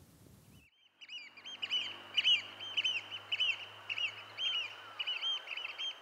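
Many seabirds calling over a steady outdoor wash of sea and wind, starting about a second in: short, sharp, arching calls, several a second, like a busy coastal colony. A faint low hum sits underneath and fades out near the end.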